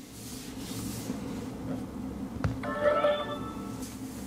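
A brief click, then a short electronic chime of a few bright tones lasting under a second, about two and a half seconds in: a smartphone's charging-start sound as it begins charging wirelessly from the other phone's battery share.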